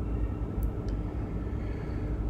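Steady low background rumble with a faint hum, and two faint clicks about halfway through.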